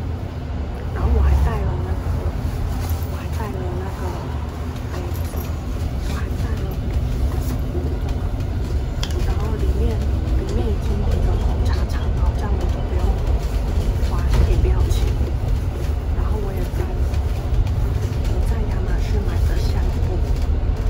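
A bus's engine and road noise, a steady low rumble heard from inside the passenger cabin, under a woman talking.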